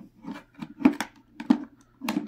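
DJI Mavic Mini remote controller being unfolded by hand: a few sharp plastic clicks and knocks from its folding parts, the two loudest a little under a second in and about a second and a half in, with lighter handling noise between.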